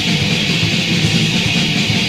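A hardcore punk band recording playing at a steady, loud level. Electric guitar and the full band form a dense, noisy wall of sound, in the rough quality of a demo or rehearsal tape.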